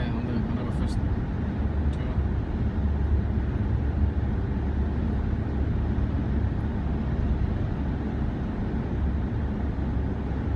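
Steady low rumble of tyre and engine noise inside a car cabin cruising at motorway speed, with a couple of faint clicks in the first second.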